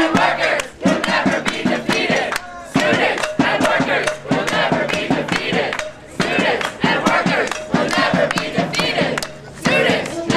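A protest crowd chanting in unison, in repeated phrases with short breaks between them, over drum beats struck with sticks.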